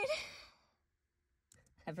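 A woman's sung vocal note ends and trails off into a breathy exhale, followed by about a second of complete silence; near the end she starts speaking.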